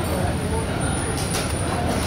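Busy food court ambience: a steady low rumble with background chatter from other diners, and a thin high whine throughout.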